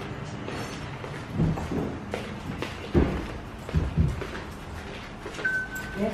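Dull, irregular thumps of footsteps and handling as someone walks through the house, then a short single steady beep near the end as the front door is opened.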